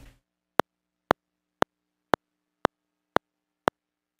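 Unfiltered electronic test clicks from an audio file: seven brief, sharp clicks evenly spaced about half a second apart, each stopping at once with no ringing. Each click holds all frequencies, and no resonant filter has yet been applied.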